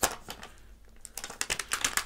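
Plastic protective case being peeled off a new Samsung Galaxy A40 phone: a run of sharp plastic clicks and crackles, once at the start and again in a cluster past the middle.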